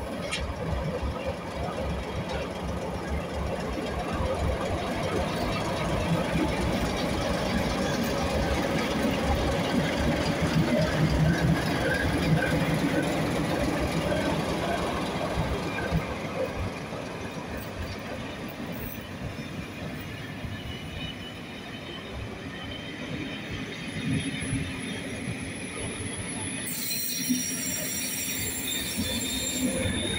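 Two ČKD T435 diesel locomotives running under power as they haul a passenger train past, with a low rumble that is loudest about a third of the way in, then the coaches rolling by. Near the end a steady high-pitched wheel squeal sets in as the coaches take the curve.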